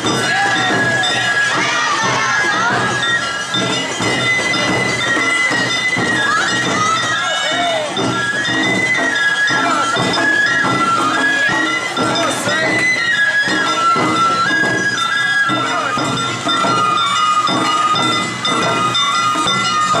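Awa Odori festival band playing: a shinobue bamboo flute carries a held, stepping melody over a steady pulse of drums and the clanging kane hand gong, with voices mixed in.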